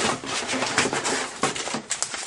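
Irregular rustling and light clicks from paper packets of flavor crystals being handled and taken out of a cardboard kit box.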